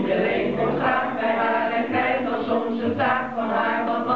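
A group of men and women singing a song together as a choir, voices blending in several pitches.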